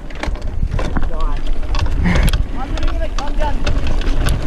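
Wind buffeting the action-camera microphone over the rumble of a 2019 Specialized Stumpjumper 29 alloy mountain bike's tyres on a dirt trail, with scattered sharp rattles and clacks from the bike jolting over bumps.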